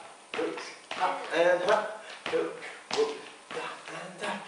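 Dancers' shoes striking and brushing a wooden dance floor in Charleston footwork, in a regular rhythm of about one step every half second or so, with a voice sounding over the steps and no music.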